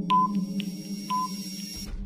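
Countdown timer sound effect: a stopwatch ticking three or four times a second, with a short beep about once a second over a steady low hum. A low thud comes near the end as the count reaches zero.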